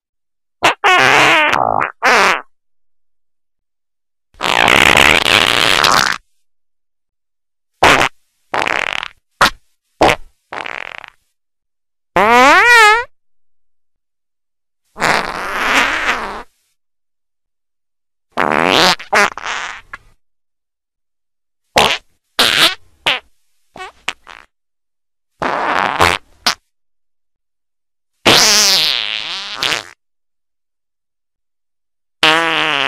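A string of about fifteen short fart sounds, each cut off into dead silence before the next, some sliding up or down in pitch.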